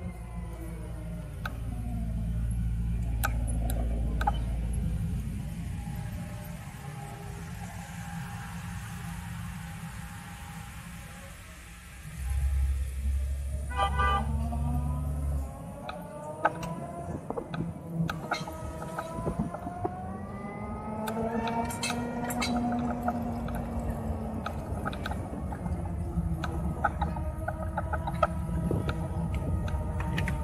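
Harley-Davidson LiveWire electric motorcycle's motor whine, falling in pitch as it slows and climbing again as it picks up speed from about halfway through. Low rumbles from other traffic come and go beneath it.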